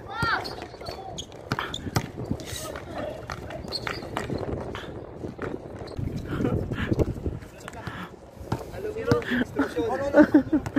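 Players' voices on the court, with scattered irregular thuds of a basketball bouncing and footsteps on concrete.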